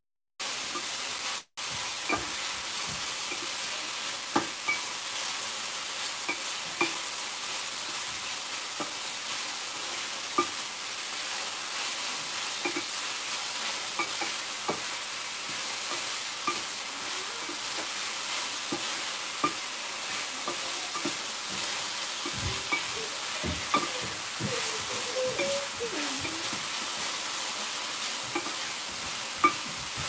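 Sliced yellow onions sizzling steadily in olive oil in a stainless steel pan, stirred with a wooden spatula that clicks and scrapes against the pan now and then. The onions are being sautéed until they turn translucent. The sound drops out briefly twice in the first second and a half.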